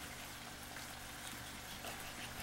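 Quiet kitchen background: a faint, steady hiss over a low electrical hum, with soft knife cuts as bell peppers are sliced on thin plastic cutting mats.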